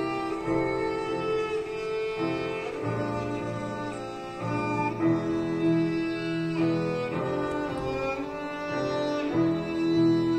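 Violin playing a melody of long held notes over grand piano accompaniment.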